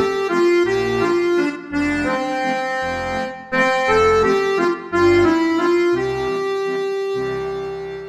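Roland FR-4x digital accordion playing a short melody on its celeste register (factory set NewCLASC, CLS3+CLS2 reed samples), with left-hand bass notes about once a second. The phrase ends on a long held note that fades out near the end.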